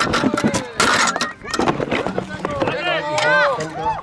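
Scuffling and rustling noise for about the first second, then several raised voices calling out, their pitch rising and falling.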